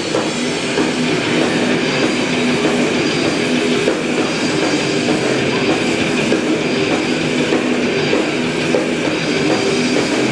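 Metal band playing live: distorted electric guitars, bass and drums run together into a dense, steady wall of sound.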